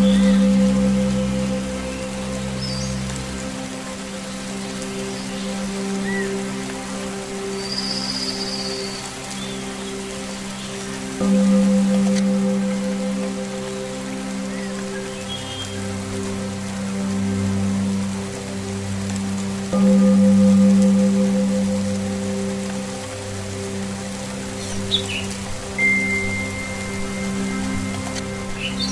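Steady rain falling, with a few short bird chirps and a held whistle-like call near the end, over slow meditation music of sustained low tones from toning bowls and low strings. The tones swell three times: about a second in, about 11 s in and about 20 s in.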